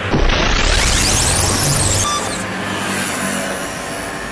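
TARDIS materialisation sound effect: a loud wheezing whoosh with sweeping rises and falls in pitch, starting suddenly.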